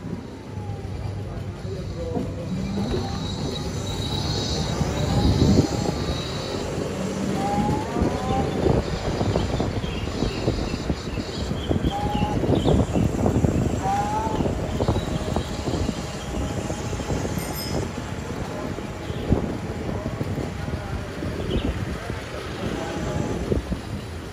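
Riding noise from an electric-converted vintage Vespa scooter: steady wind and road rumble with no engine beat, plus a few short squeaks.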